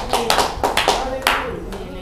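Congregation clapping in response, irregular claps from several people mixed with voices, dying away in the second half.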